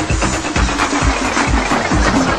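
90s electronic dance music from a remember DJ mix, with a steady kick-drum beat under dense, noisy synth layers.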